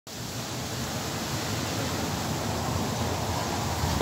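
Steady rushing of wind, picked up by a phone's microphone ahead of an approaching thunderstorm, growing slightly louder over the few seconds.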